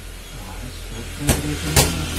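Two sharp thumps about half a second apart, a little past the middle: a play ball being thrown and caught by hand. A low steady hum sits underneath.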